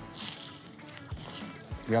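A bite into a baked puff-pastry chicken pie, a short crisp crunch at the start, over faint background music.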